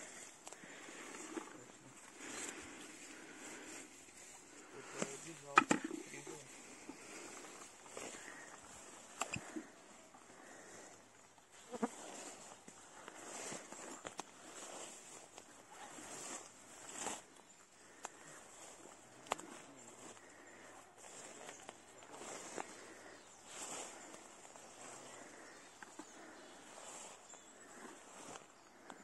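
Footsteps and brushing through grass and ferns on a forest floor: soft, irregular rustles while walking, with a brief voice about five to six seconds in.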